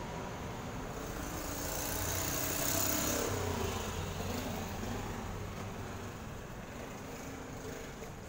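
A road vehicle passing by: a steady rumble and hiss that swells to a peak about three seconds in, dropping in pitch as it goes by, then fades.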